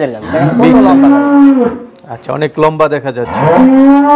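Holstein Friesian cattle mooing: one long, steady call starting about half a second in and lasting over a second, and a second long call beginning near the end.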